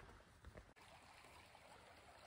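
Near silence: the faint, steady rush of a small mountain creek, with a soft thump about half a second in.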